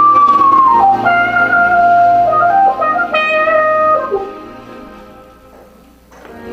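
Live jazz band: a lead melody of long held notes over a sustained bass note and keyboard, dying away from about four seconds in to a hush.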